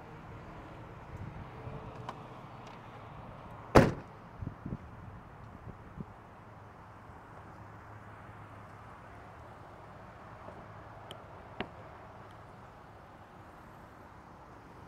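Trunk lid of a 2023 Dodge Challenger shut with one sharp bang about four seconds in, followed by a few lighter knocks.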